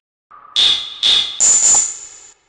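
Three sharp, high-pitched electronic tone hits about half a second apart, each ringing briefly and fading, after a short silence.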